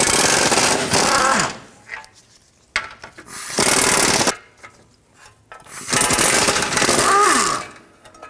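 Pneumatic impact wrench hammering in three bursts of one to two seconds each, running bolts out of a plate under the car, with a falling whine as it winds down at the end of a burst.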